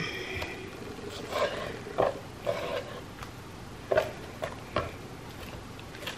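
Kitchen knife trimming fat from a partly frozen steak, with a few short taps and knocks against the cutting board.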